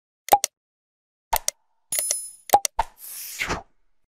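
Sound effects of an animated subscribe button: quick clicks and pops in pairs, a short bell ding about two seconds in, and a whoosh that falls in pitch near the end.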